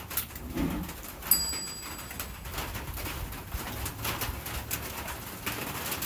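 A long-nosed lighter clicking, with a sharp snap about a second in, as it is struck to ignite flammable spray inside a tire on its rim. The vapour catches only as a small flame with no loud pop: the bead does not seat.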